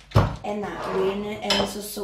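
A ceramic plate knocks once on the countertop just after the start, and a plastic zip bag crinkles on it near the end. A woman's voice goes on underneath.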